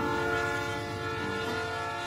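Train horn sounding one long held chord as a train passes on the railroad tracks.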